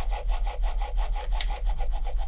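Kiiroo Keon automatic stroker running, its motor driving the sleeve carriage up and down with the stroke shortened for top speed, about 260 strokes a minute: a fast, even mechanical rhythm.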